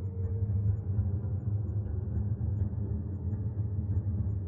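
Steady low rumbling hum of background noise, with no distinct events.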